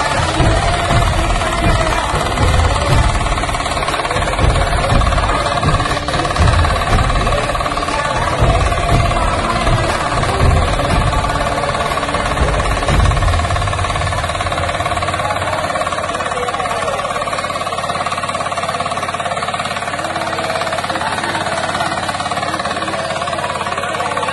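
Kirloskar Mini T8 power tiller's engine running under load while cutting and clearing grass, with heavy, uneven rumbling for the first half that settles to a steadier, smoother run about fifteen seconds in.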